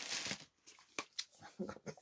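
Fragrance mist spray bottle pumped: a short hiss at the start, followed by a few faint clicks.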